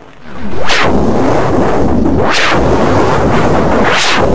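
Very loud, distorted roar of dense noise that swells in over the first half-second and then holds steady, with a whooshing sweep that rises and falls about every second and a half.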